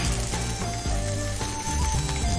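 Mushrooms sizzling as they are stir-fried in a frying pan, under steady background music.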